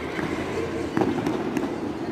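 A sharp knock about a second in, followed by a few lighter clicks, from a pencak silat solo staff routine: strikes and stamps of the performer's movements, over the murmur of a large hall.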